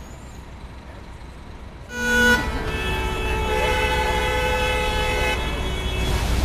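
Vehicle horn on a city street: a short, loud toot about two seconds in, then a held blast of several steady tones sounding together for about three seconds.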